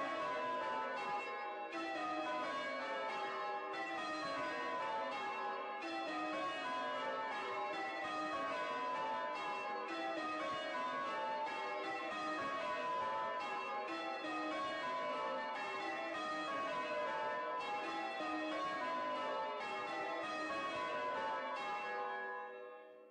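Church tower bells change ringing: a ring of bells struck one after another in rapid, continuous sequence, each round stepping down in pitch and repeating about every two seconds.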